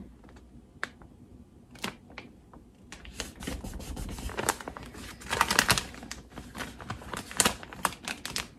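Vinyl transfer tape being pressed down and rubbed onto an umbrella's fabric canopy to reseat a piece of the decal. There are a few separate clicks, then from about three seconds in a dense run of scratching and crackling.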